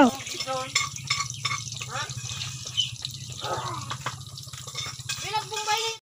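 Hot dogs frying in a wok over an open fire, with a running crackle of small pops and a steady low hum underneath; low voices come in now and then.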